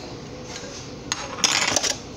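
A spoon scraping avocado off into a metal blender cup, a rough scrape with a few clinks against the cup. It starts a little past halfway and is loudest for about half a second near the end.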